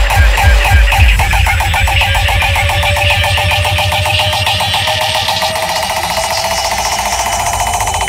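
Uptempo hardcore electronic music: the fast pounding kick drum cuts out about a second in. It leaves rapid repeating synth stabs and a rising noise sweep that builds up toward a drop.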